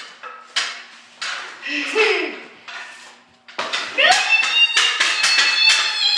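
Sharp clacks of hockey sticks hitting a puck and the hard floor, echoing in the room, with children's shouts among them. The clacks come sparse at first and then thick and fast from a little past halfway.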